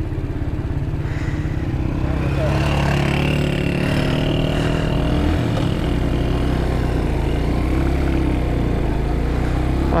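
Motorcycle engine running steadily while riding over a rough, rocky dirt track, the engine note picking up a little about two seconds in and then holding.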